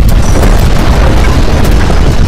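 Loud, continuous earthquake rumble, deep and unbroken, with crackling and rattling through it: the sound of violent ground shaking at the strongest intensity, shindo 7.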